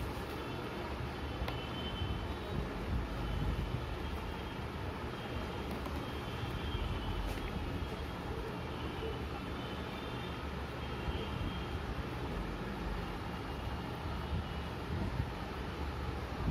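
Steady low background rumble, like distant traffic, with faint intermittent high tones and a couple of faint light taps.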